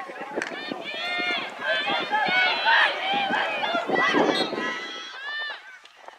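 Several voices shouting and calling out over one another during a lacrosse game, short rising-and-falling calls that overlap, dying away near the end.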